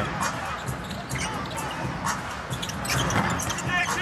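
Basketball dribbled on a hardwood arena court, a series of thumps over steady arena background noise.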